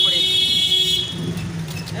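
A vehicle horn sounding one high, steady note that stops about a second in, over the low rumble of passing traffic.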